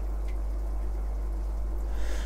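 A steady low hum with a faint hiss over it, and no other distinct event.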